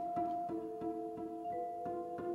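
Vibraphone played with mallets, struck notes ringing on and overlapping as long held tones, with new strikes about three times a second, alongside a double bass.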